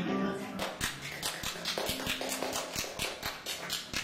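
A quick, slightly uneven run of sharp taps, several a second, with a few faint sustained instrument notes and low talk underneath, ending as the guitars come in.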